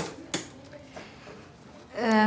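A hand handling a small clear box on a table: a sharp click at the start, a second about a third of a second later, then a fainter one about a second in.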